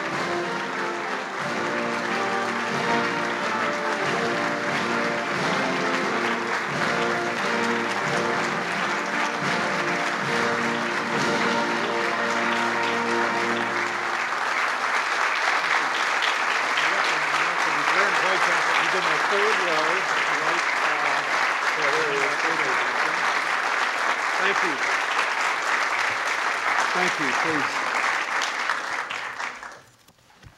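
Audience applause over instrumental music. The music stops about halfway through while the clapping carries on, growing a little louder, then dies away near the end.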